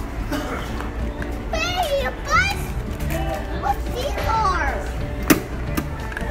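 Young children's high-pitched voices chattering and squealing as they play, over steady background music. One sharp knock comes near the end.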